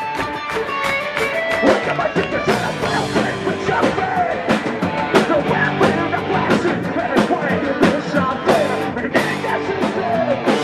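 Live punk rock band playing: guitars and a driving drum beat, with the lead vocal coming in about two seconds in.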